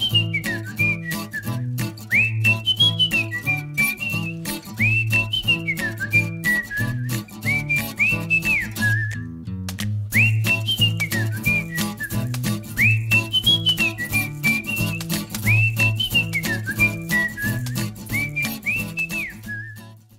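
Upbeat outro music: a whistled melody over a bass line and light clicking percussion. The tune breaks off briefly about halfway through, then repeats.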